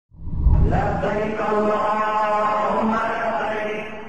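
Opening jingle: a voice chanting in long, held notes. It swells in over a low rumble and fades out near the end.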